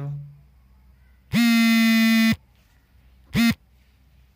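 A loud, steady electric buzz at one pitch lasting about a second, then a second, much shorter buzz.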